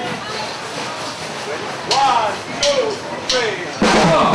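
A man's voice gives three short calls, each falling in pitch, evenly spaced about 0.7 s apart. The drum kit then comes in loudly just before the end.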